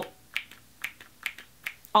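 A quick run of about eight small, sharp plastic clicks, roughly four a second, from the black plastic cap and top of an empty Dr. Jart+ BB cream tube being worked between the fingers.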